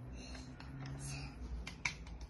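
Light clicks of shape-sorter pieces knocking against each other and their pegs as a child lifts a square piece off the board, with two sharper clicks near the end.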